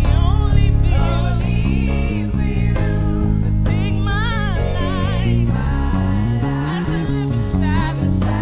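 Gospel praise team singing a worship song into microphones over instrumental accompaniment, a lead voice singing wavering runs above the group.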